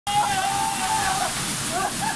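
Waterfall pouring steadily into a pool. Over it a man's voice holds one long cry, then breaks into laughter near the end.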